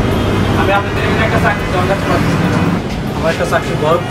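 Speech: a man talking in dialogue, over a steady low hum.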